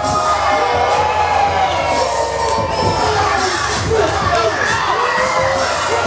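Crowd of spectators cheering and shouting, many voices at once, with music and a steady bass underneath.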